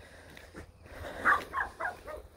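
A dog barking about three times in quick succession, starting a little over a second in.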